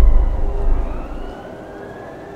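A siren wailing, its pitch sliding slowly down and then rising again, under a loud deep rumble that fades away about a second in.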